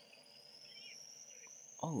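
A faint, thin high-pitched whine slowly rising in pitch, part of the anime episode's sound track. It is cut into near the end by a man's startled "Oh".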